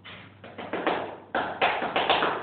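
A run of about eight irregular knocks and scuffs from objects being handled, louder in the second half.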